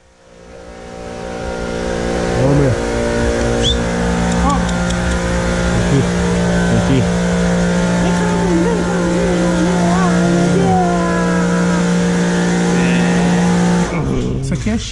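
A machine motor at a wash bay starts up, rising over the first couple of seconds, then runs with a steady hum until it cuts off sharply near the end.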